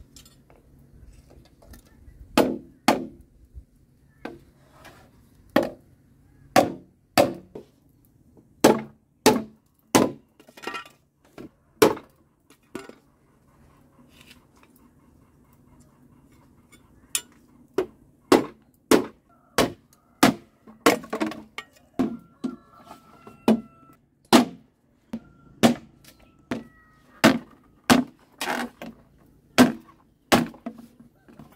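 Machete chopping green bamboo: a run of sharp strikes, about one to two a second, pausing for a few seconds midway before the chopping resumes.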